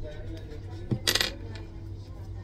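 Small glass drug ampoule dropped onto a hard counter: a light knock, then a brief bright clinking clatter about a second in.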